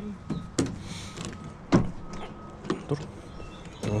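A handful of sharp knocks and clicks, the loudest a little under two seconds in, from a particleboard bookshelf being handled and rocked on the ground.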